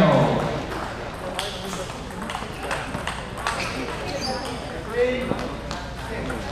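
Table tennis balls giving scattered sharp clicks as they bounce on hard surfaces, over voices murmuring in the hall. A loud shout trails off right at the start, and a short call comes about five seconds in.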